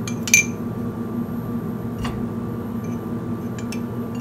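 A single sharp metallic clink of kitchen utensils about a third of a second in, followed by a few faint ticks, over a steady low hum.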